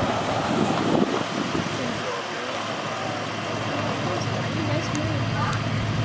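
Indistinct, faraway voices over a steady low hum of idling vehicles.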